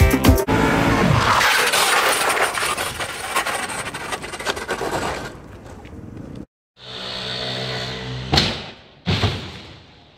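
Soundtrack music cuts off on a long crash that fades away over several seconds, like a cymbal or shattering glass. After a brief dropout, a steady hum starts, broken by two sudden loud hits near the end.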